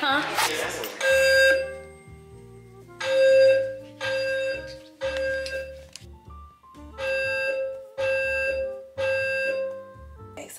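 Smoke detector alarm sounding in the temporal-three pattern: loud, high-pitched beeps in groups of three, about a second apart, with a longer pause between groups.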